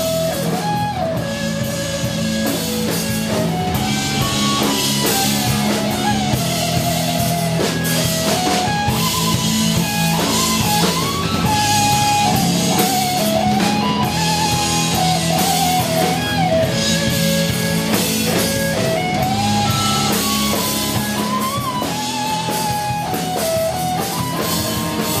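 Rock band playing live: electric guitars over a drum kit, with a melodic line that bends up and down in pitch.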